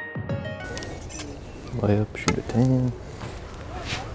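Background music cutting off at the start, then quieter outdoor ambience with a man's voice in two short low mutters and a few sharp light clicks.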